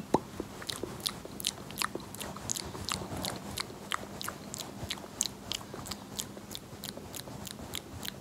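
Fingertips pressing and rubbing on the camera lens right at the microphone, making a run of crisp crackling clicks, several a second, as ASMR touch sounds.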